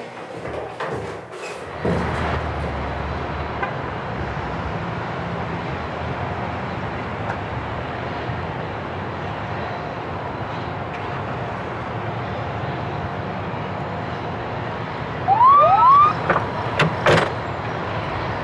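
Steady city traffic noise. Near the end come two short rising whoops, then a few louder knocks.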